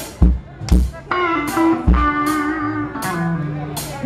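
Live electric blues band playing: drum kit hits about twice a second over electric bass, with an electric guitar line held through the middle.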